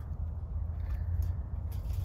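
Outdoor background: a steady low rumble with a few faint scattered clicks, and no distinct event.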